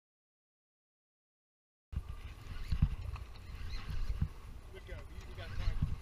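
About two seconds of silence, then low wind rumble on the microphone with a few dull thumps and short excited vocal sounds from anglers.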